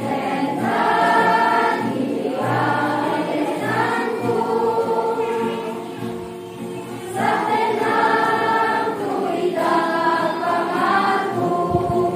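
A children's and youth choir singing a hymn. The sung phrases swell, ease off briefly about six seconds in, then come back strongly.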